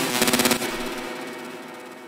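Serum sawtooth synth lead playing the drop: a quick run of rapid repeated stabs, then the last note rings out and fades away.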